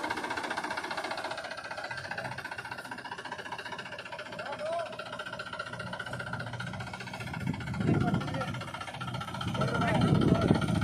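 Mahindra 265 DI tractor's three-cylinder diesel engine running steadily at low speed, with louder swells briefly about three-quarters of the way in and again just before the end.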